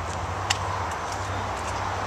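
Power liftgate of a 2010 Chevrolet Equinox opening: a steady low motor hum, with a single click about half a second in.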